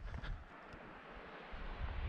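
Faint wind buffeting the microphone, a low rumble over a steady hiss that eases in the middle and picks up again near the end.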